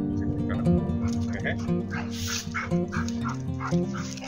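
Background music, with dogs yipping and barking as they play: a quick run of short yips and barks starts about a second in.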